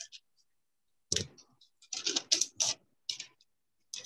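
Irregular clicks and snatches of a voice from a participant's unmuted microphone on a video call. They come in short bursts that cut in and out between about one and three and a half seconds in.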